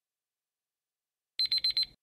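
Countdown timer's electronic alarm: a quick burst of about four high-pitched beeps near the end, signalling that time is up.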